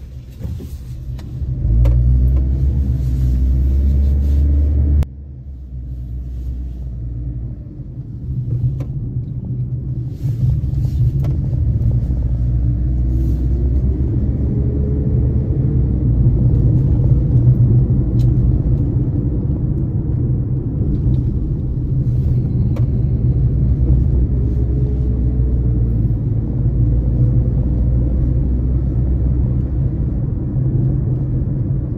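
A vehicle on the move: a steady low rumble of engine and road noise, twice rising gently in pitch as it picks up speed.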